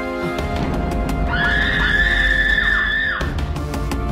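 Horror film score: a low droning bed of sustained tones, with a high shrill screeching tone held for about two seconds in the middle, bending downward as it fades.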